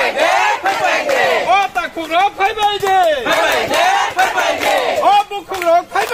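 A crowd of many voices shouting slogans together, in repeated rising and falling calls.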